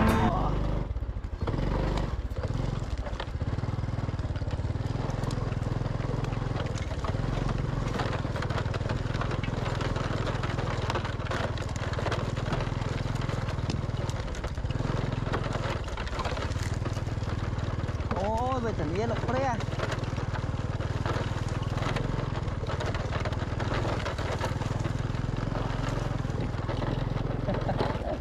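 Small Honda step-through motorbike engine running steadily while ridden, with wind and rough-ground rattle on the microphone as it crosses rice-field stubble. A short wavering pitched sound comes about eighteen seconds in.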